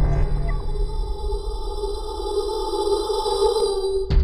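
Electronic intro sting: a sustained synthesized drone of several steady tones held together, with a deep bass that fades early on. It cuts off suddenly at the end.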